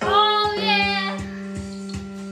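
A young girl singing over a jazzy backing track: her voice swoops up into a held note with vibrato, which ends about a second in, leaving the instrumental backing with its steady beat.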